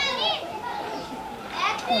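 People's voices: talk with short, high-pitched calls at the start and again near the end.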